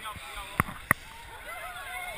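Crowd voices and shouting in the background, with two sharp knocks close together about half a second and a second in.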